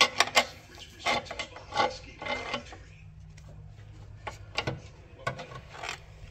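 Steel pry bar levering on the ring gear teeth through the bellhousing inspection opening, in short metallic clicks and scrapes, to turn over a seized AMC 304 V8 by hand. The strokes come in a cluster over the first half, ease off for a moment, and pick up again with a few clicks near the end.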